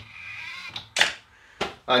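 Tesla Model 3 charge port door actuator running briefly with a faint whine, then two sharp clicks about half a second apart as the door opens.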